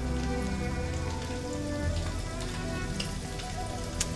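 Shelled shrimp sizzling and crackling steadily in hot oil in a frying pan, with soft background music underneath.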